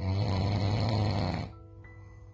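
An old man snoring in his sleep: one loud snore about a second and a half long, over background music.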